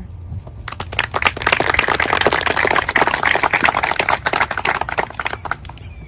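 Applause from a small seated audience, many hands clapping in a dense patter. It starts about a second in and dies away near the end.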